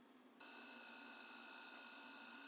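Surgical power drill running with a steady high-pitched whine, starting suddenly about half a second in, drilling a screw hole through the ulna for the fracture plate.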